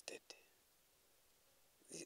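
Near silence: a pause in a man's speech, with the clipped end of a word at the very start and the next word beginning near the end.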